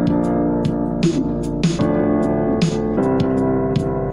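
Keyboard playing the 1-4-6-5 gospel chord progression, held chords moving from the four chord to the six chord and then to the five chord. A regular percussive beat of about two hits a second runs under the chords.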